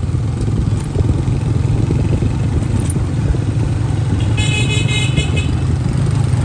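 Motorcycle engine running steadily underway, a low even rumble, with a horn honking for about a second near the end.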